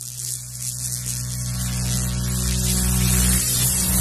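Sound effect of an animated logo sting: a low steady drone with a hiss over it, swelling louder.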